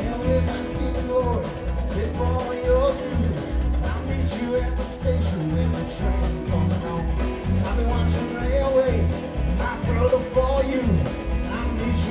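Live rock band playing: electric guitars, electric bass, keyboards and a drum kit, with a bass line moving from note to note, a wavering lead melody on top and steady cymbal strikes.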